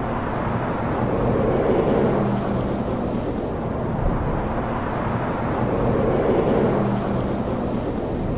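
Rumbling, thunder-like noise over a few low held tones, swelling about two seconds in and again about six seconds in: an ambient sound-effect intro to an electronic mix.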